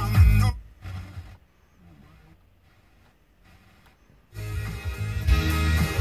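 Music from an FM car radio cuts out about half a second in as the tuner is stepped to the next frequency, leaving near silence for almost four seconds. Music from the newly tuned station, with guitar, comes back in near the end.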